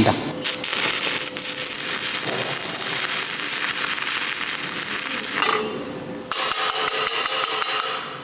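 Stick (MMA) welding arc from a 3.2 mm 6013 electrode at about 100 A: a steady, crackling hiss that drops away briefly a little after five seconds in and then picks up again.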